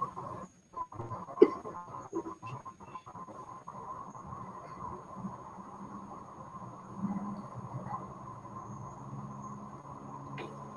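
Steady background hum on a video-call line, with a thin steady tone in it. Several short clicks and knocks fall in the first few seconds, the loudest about one and a half seconds in, typical of handling a desk, mouse or headset.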